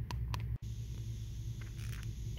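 Steady low rumble of a handheld phone's microphone being moved around, with a few faint ticks in the first half second. The sound cuts out abruptly for an instant about half a second in, where the footage is cut, then the rumble resumes.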